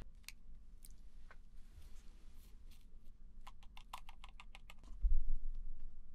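Light scattered clicks and taps from hands handling small objects at a desk, with a quick run of clicks a little after the middle and a low thump about five seconds in.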